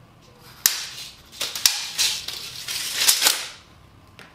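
Steel tape measure being taken off a board and its blade retracting into the case: a run of sharp clicks and snaps with sliding, rasping noise between them.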